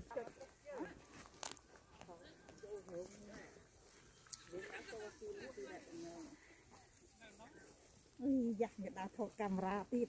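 People talking at a distance, faint, with a louder, closer voice near the end.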